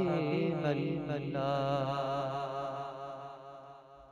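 A man's voice singing a naat, with no words. He holds a long, ornamented, wavering note that fades away toward the end.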